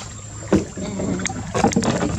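Small rowed boat moving through the water, with a sharp knock about half a second in, likely the oar working against the hull.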